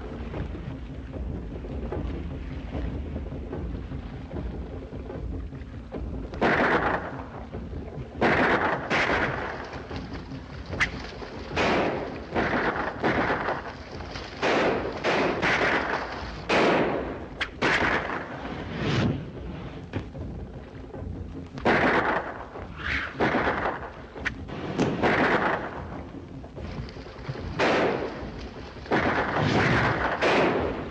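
Gunfire: around twenty sharp, echoing shots fired in an uneven volley, starting about six seconds in, over a low steady rumble.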